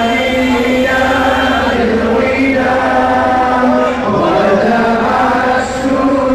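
Men's voices chanting a religious chant together, in long held phrases that slowly rise and fall in pitch, with brief pauses for breath between phrases.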